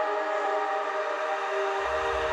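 Melodic dubstep music: a held chord with no bass under it, and a deep bass note coming in near the end.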